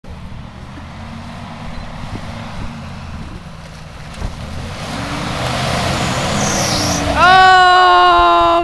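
A Suburban's engine revving harder and louder as it churns through deep mud and bogs down, with tyre and mud noise building over the second half. Near the end a loud, long, high-pitched vocal call rises and holds over it.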